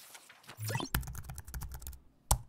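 Computer keyboard typing sound effect: a quick run of key clicks as text is typed into a search bar.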